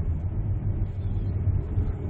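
Steady low rumble of engine and road noise inside the cabin of a moving 2017 Ford Explorer with the 2.3-litre turbocharged petrol four-cylinder.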